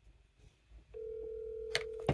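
A steady electronic beep tone at one held pitch, starting about a second in and still sounding at the end, with a sharp click near the end.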